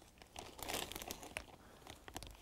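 A bag of Kuwase Touch dry herabuna bait crinkling and rustling as a plastic measuring cup scoops into it, with soft scattered clicks and scraping of the dry bait.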